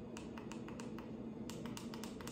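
Plastic level buttons on the side of a dog training collar's handheld remote being clicked repeatedly to step the level up or down. The clicks come in a quick run of about five a second, pause briefly, then a second run near the end.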